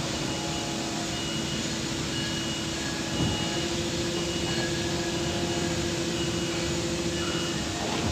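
Plastic injection moulding machine running steadily with its mould clamped shut mid-cycle: a constant machine hum with a faint steady tone held through it.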